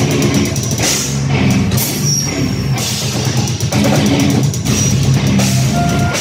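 Heavy metal band playing live and loud: distorted electric guitars and bass over a pounding drum kit with crashing cymbals.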